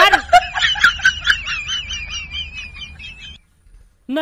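High-pitched, quavering giggle, a comic laughter sound effect that wavers quickly up and down in pitch and drifts slightly lower, then cuts off abruptly about three and a half seconds in.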